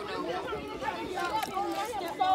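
Indistinct chatter of several voices talking at once, with no clear words.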